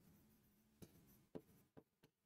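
Near silence, with a few faint taps of a pen on a writing board as words are written, about three of them in the second half.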